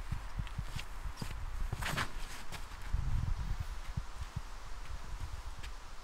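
Footsteps of a disc golfer's run-up and throw on an artificial-turf tee pad, a series of short soft knocks, with a brief louder rustle about two seconds in.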